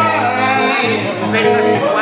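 Live blues: electric guitar with a sustained low bass line and a man singing.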